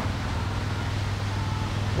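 Steady outdoor background noise with a constant low hum and no distinct events.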